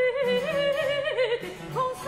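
French Baroque petit motet: a high soprano voice singing a melodic line with wide vibrato and ornaments, over a steady low bass accompaniment.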